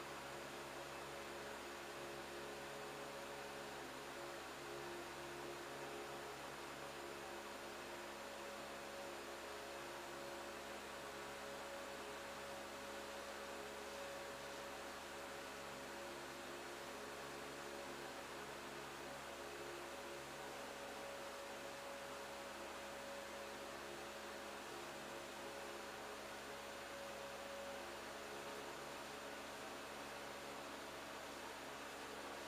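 Faint, steady low hum with a few fixed tones over an even hiss: room tone.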